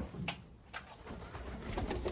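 Domestic dönek (Turkish roller) pigeons cooing softly in the loft, growing a little louder in the second half.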